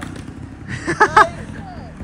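A person cheering: two short, loud whoops about a second in, over a low, steady rumble.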